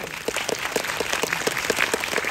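Audience applauding: many hands clapping in a dense, steady stream that starts right at the beginning and keeps going.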